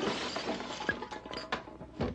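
Cartoon sound effect of glass shattering: a dense crash that thins out into scattered clinks and knocks as the pieces settle, fading toward the end.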